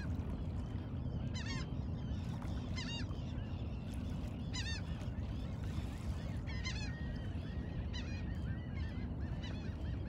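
Birds calling: several loud, arched squawks a second or two apart, then a quick run of short repeated notes in the last few seconds, over a steady low rumble.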